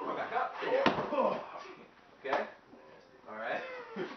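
A training partner thrown down onto foam floor mats: a thud about a second in and a second thud a little after two seconds, with indistinct voices around them.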